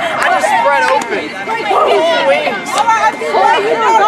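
Crowd of teenagers chattering, many voices talking and calling out over one another.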